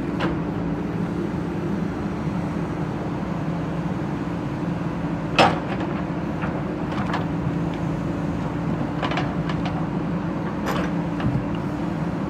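JCB backhoe loader's diesel engine running steadily while its bucket scrapes and knocks through broken brick rubble. A sharp knock about five seconds in is the loudest, with a few smaller knocks later on.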